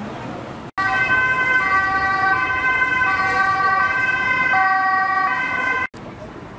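Emergency vehicle's two-tone siren, loud and close, alternating steadily between a high and a low note. It starts abruptly just under a second in and cuts off sharply near the end.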